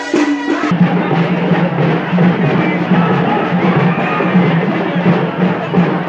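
Drumming, dense and loud, coming in abruptly less than a second in after a brief pitched melody cuts off.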